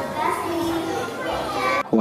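A young girl speaking into a handheld microphone. The speech breaks off abruptly just before the end.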